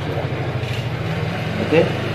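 A steady low hum of an idling engine.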